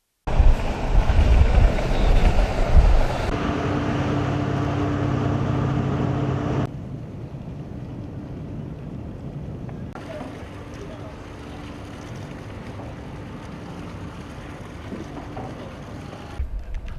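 Helicopter rotor and wind noise, a loud low rumble for about three seconds. A steady engine hum with a low drone follows. After about seven seconds the sound drops to a quieter, steady boat engine hum with faint voices.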